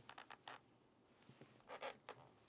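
Faint handling noise from a leather briefcase being lifted and turned by hand: a few soft clicks and scrapes, then a slightly louder rustle near the end.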